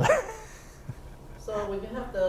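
A man laughing briefly: a short pitched chuckle comes about a second and a half in, after the end of a spoken sentence.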